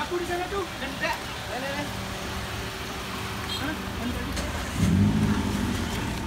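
A car engine idling steadily, with people talking over it and a louder stretch of low sound about five seconds in.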